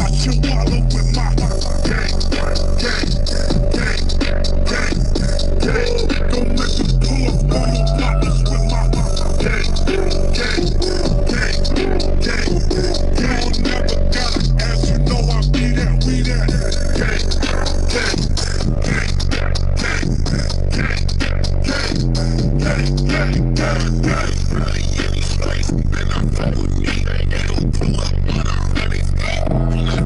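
Electronic hip-hop-style music played loud through a car's high-power competition audio system, heard inside the cabin. Deep bass notes step up and down under a steady beat.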